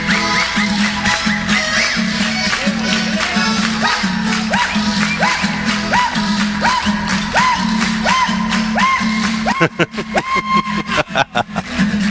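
Chilean cueca played on button accordion and guitar. It is an instrumental passage: a repeating accordion figure over a pulsing bass, about two beats a second. Near the end it turns choppy with sharp strokes.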